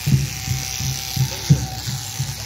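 A small electric motor buzzing steadily with a thin constant whine, over background music with a regular low beat about twice a second.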